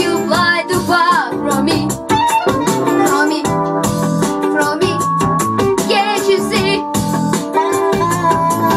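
A boy singing into a microphone in short, wavering phrases over a backing of steady electric-piano chords.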